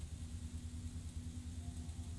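A steady low background hum with a faint, even tone above it, and nothing sudden.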